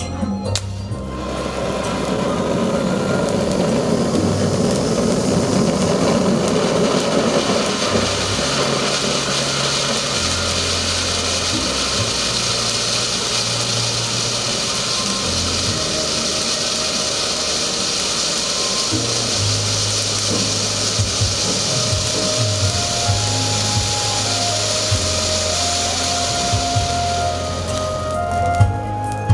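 Spark fountains hissing steadily, starting about a second in and dying away near the end, over background music.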